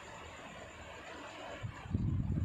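Faint steady background noise of a room, with a soft low knock near the end.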